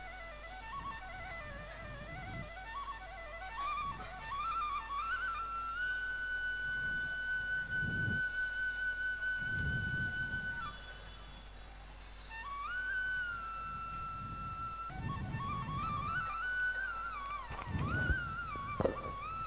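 Background instrumental music: a solo flute melody winding up and down, settling into one long held high note midway, breaking off for a moment, then picking up again.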